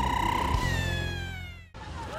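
Theme jingle of a TV show: a long, drawn-out vocal cry with vibrato over a music bed, held steady and then sliding down in pitch. It cuts off abruptly near the end.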